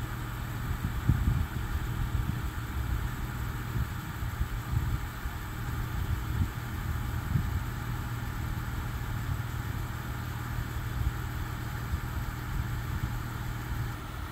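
A car engine idling steadily, a low even hum with no change in speed.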